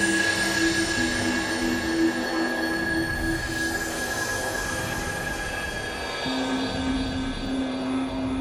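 Experimental minimal electronic music: a steady high tone held over a hissing, grainy noise bed, with low sustained notes underneath that change pitch about a second in and again around six seconds.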